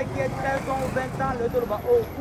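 A man speaking, not picked up by the transcript, over a steady low background of street traffic noise.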